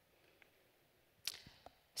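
Near silence: quiet room tone, broken a little after a second in by a short hiss and then a faint click.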